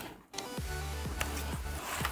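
Background music with a low bass line and repeating pitched notes, dropping out briefly just after the start.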